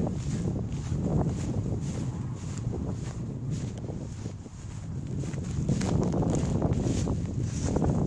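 Wind buffeting the microphone, with footsteps and rustling as someone walks along a dirt path through dry grass.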